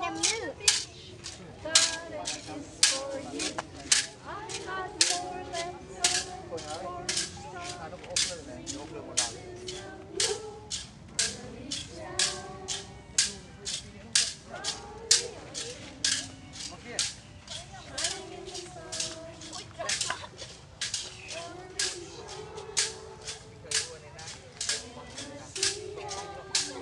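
Children's voices singing or chanting in unison over a steady beat of sharp clacks, about two a second.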